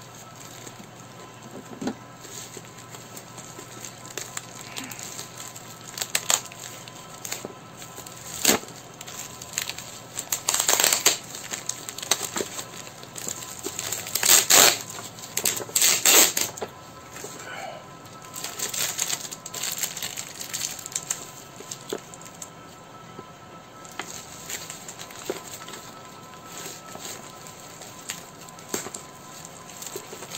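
Packing tape and cardboard packaging being torn and crinkled by hand while a taped box is opened, with scattered crackles and clicks. There are several louder bursts of tearing and rustling around the middle.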